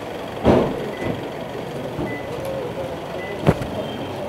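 An SUV's door knocking shut near the end, with faint short high beeps about once a second and a louder burst of sound about half a second in, over a bustling outdoor background.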